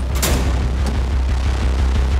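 Deep, steady rumble of a power-station boiler furnace firing at around 1100 degrees, heard at an open inspection port. A sharp metal clank about a quarter second in is the port door being shut.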